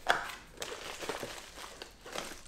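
Small cardboard box being opened by hand: a sharp tap right at the start, then soft rubbing and rustling of the lid and flaps with a few faint ticks.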